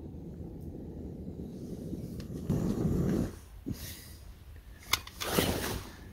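A small hand-held gas torch burns with a steady low rushing sound as it heats a sagging plastic sewer pipe. A man breathes heavily twice, once about halfway and once near the end, with a small click just before the second breath.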